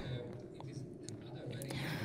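Faint murmured voices over the low hum of a large hall.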